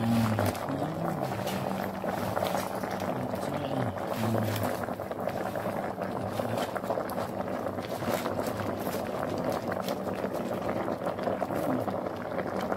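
Pot of vegetable and meat broth boiling on the stove, a steady crackling bubble.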